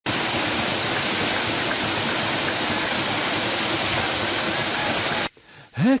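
Waterfall: a steady, even rush of falling water that cuts off suddenly about five seconds in.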